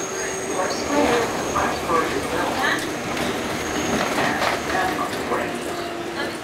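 New York City subway train running on elevated track, heard from inside the car: a steady running noise with a thin steady tone over it. People's voices talk over it through the middle.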